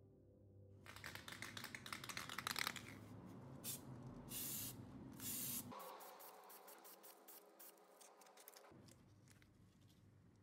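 An aerosol spray paint can: rattling clicks, then a few short hisses of spray around the middle, then more scattered clicks.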